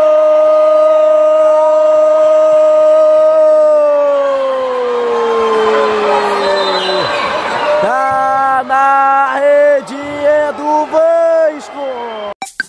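Commentator's long drawn-out goal shout, held on one note for several seconds and then sliding down in pitch, over crowd cheering in the gym. It is followed by a run of short shouted calls near the end.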